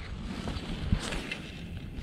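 Wind on the microphone: a steady low rumble with light hiss, and a faint click about a second in.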